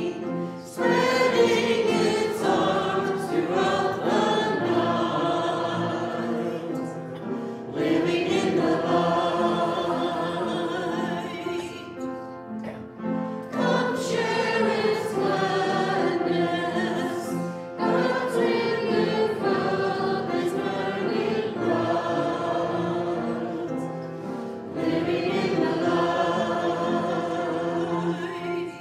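A church congregation singing a hymn together, in long phrases with short breaks between them.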